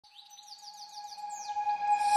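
Bird chirping: a quick run of high chirps, each sliding down in pitch, over a steady held tone, growing louder throughout.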